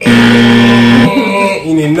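Loud wrong-answer buzz: one flat, steady low tone for about a second, then wavering, sliding pitches in the second half.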